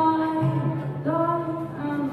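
A woman singing long held notes to her own acoustic guitar accompaniment.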